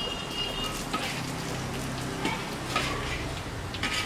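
Pumpkin cakes sizzling steadily in hot oil in a large iron wok over a high flame, with a few short scrapes and clinks of a long metal spatula against the wok as they are turned.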